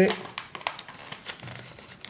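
A sheet of thin paper rustling and crinkling under the fingers as it is folded and its crease pressed down, in a string of small, irregular crackles.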